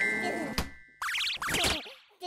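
Cartoon sound effects: a sparkling chime rings and fades, with a sharp knock about half a second in. Then comes a run of wobbly, rising, springy boing sounds in the second half.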